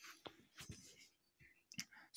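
Near silence, with a few faint, separate clicks.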